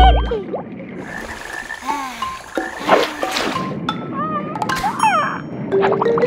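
Cartoon underwater sound effects: a heavy thud at the start, then a busy run of short gliding bubble bloops and chirps, and a rising tone near the end.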